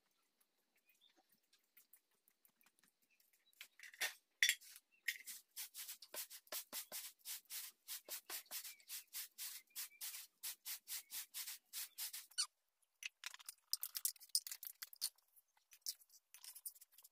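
Rhythmic rubbing or scraping by hand, quick even strokes at about three to four a second, starting about four seconds in, with a short break before a last run near the end.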